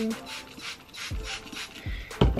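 Plastic trigger spray bottle spritzing water onto curly hair in a quick series of short hissing squirts, several a second.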